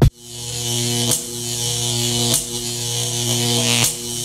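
Electronic glitch buzz in an intro sting: a loud, steady, pitched electric buzz with a hiss on top. It swells in over the first second and breaks off briefly three times.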